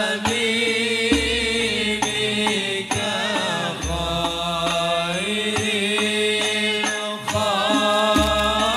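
Two male voices chant an Arabic sholawat qasidah in a long, ornamented melismatic line over amplified microphones. Banjari hadrah frame drums accompany them with a regular beat, and deep drum strokes fall about a second in, near the middle and at the end.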